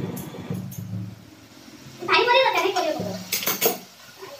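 Metal spatula clinking and scraping against a metal kadai as food is stirred, with a quick run of sharp clinks near the end.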